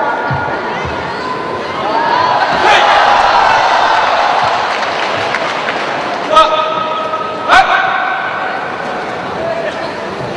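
Crowd in a sports hall, with voices shouting and calling out, and two sharp impacts, the loudest sounds, about six and a half and seven and a half seconds in, each followed by a short held shout.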